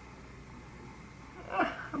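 Quiet room tone with no distinct sound for about a second and a half, then a short vocal sound from a woman near the end.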